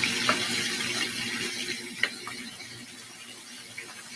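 Hamburger patties sizzling in a frying pan with a lot of liquid in it, a steady hiss that slowly dies down. A few light clicks of the metal spatula and tongs against the pan.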